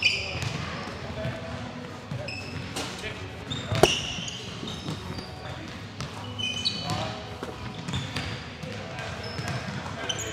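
Basketballs bouncing on a hardwood gym floor amid short, high sneaker squeaks, echoing in a large hall. One sharp bang about four seconds in is the loudest sound.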